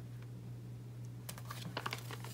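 Faint, quick light clicks of fingernails and sticker paper as stickers are pressed onto a planner page and the sticker sheet is handled, starting a little past halfway, over a low steady hum.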